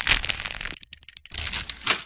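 Sound effects for an animated logo sting: a rapid, dense crackling and clicking, thinning out about a second in and then coming back before stopping near the end.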